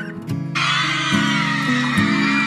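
A pop song with guitar plays throughout. About half a second in, a crowd of women and girls bursts into high-pitched screaming and cheering over the music.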